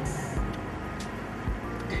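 A car running, with background music that has held tones and a few low thumps.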